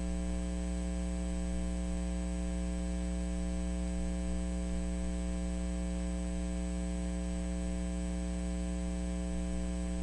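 Steady electrical mains hum with a stack of higher overtones and a faint hiss, unchanging throughout.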